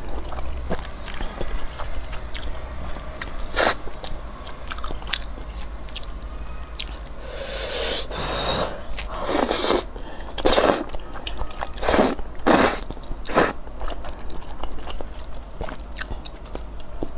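Close-miked slurping and chewing of saucy noodles: a series of short, sharp slurps, bunched together in the second half, with wet chewing in between.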